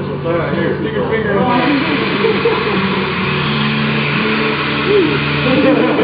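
Steady low hum of milking-parlour machinery, with people talking and laughing over it.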